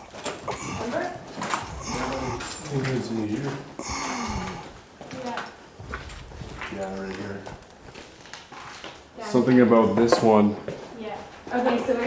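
Mostly people talking, loudest near the end, with scattered footsteps and scuffs on a littered hard floor.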